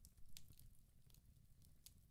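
Near silence: room tone, with a few faint soft clicks, the most noticeable about a third of a second in.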